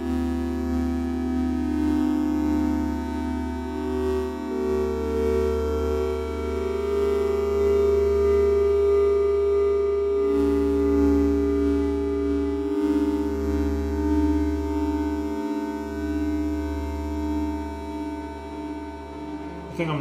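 Homemade digital modular synth's JavaScript software synthesizer, a triangle and a square oscillator mixed and sent through a delay, playing long held notes triggered from a computer keyboard, the pitch moving to a new note every few seconds. A steady low hum runs underneath.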